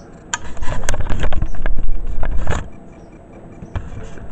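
Handling noise as the camera is moved and repositioned: a loud, irregular run of knocks, clicks and rubbing on the microphone. It starts shortly after the beginning, lasts about two seconds and then stops, over a faint clock ticking.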